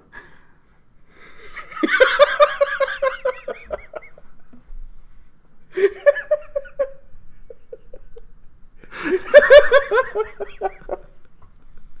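People laughing in three bursts, with quieter gaps between.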